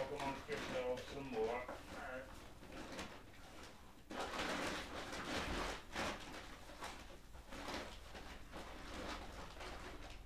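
A muffled voice for the first two seconds, then rustling and knocking from about four seconds in, as someone rummages through tools and bags looking for a tap.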